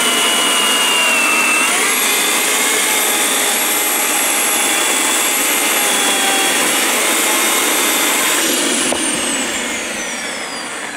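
Bosch AKE 40 S electric chainsaw cutting through a dry black locust log, its motor running with a steady whine under load. About two seconds in the pitch rises, and near the end, after a click, the pitch falls away as the motor winds down.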